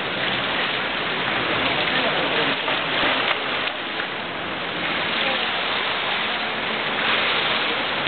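Steady splashing and wash of swimming-pool water, with a swimmer's backstroke-start entry splash about three seconds in.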